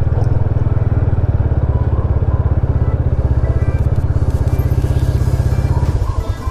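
Italika RT250 motorcycle engine running at low revs while the bike rolls slowly to a stop, a fast, even low pulse of about ten beats a second.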